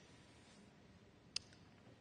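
Near silence: room tone, with a single brief click a little past halfway.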